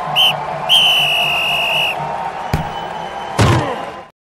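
Segment-intro sound effect: a referee's whistle over a stadium crowd, a short blast followed by one long blast, then a sharp thump about two and a half seconds in and a whoosh near the end.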